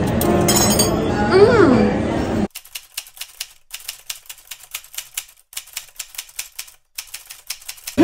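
Background music for about the first two and a half seconds, then it cuts off and a typewriter sound effect takes over: quick, irregular key clicks in short runs with brief pauses, several clicks a second, keeping time with on-screen text typing out letter by letter.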